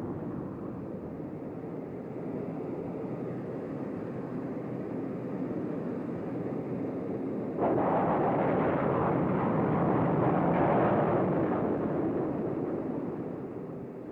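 Steady rushing of a jet aircraft in flight, then about halfway through a sudden, much louder roar as a Sidewinder missile's rocket motor fires off the wing. The roar lasts about four seconds and then fades.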